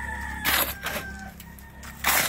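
A rooster crowing in the background, one drawn-out call fading out a little past a second in. About half a second in, a short loud scrape as a shovel is worked through a pile of sand and cement mix.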